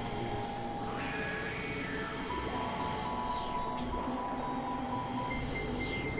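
Experimental electronic synthesizer music: layered steady drones with a high tone pulsing on and off in quick repeats. Two high sweeping glides cross it, about three seconds in and near the end.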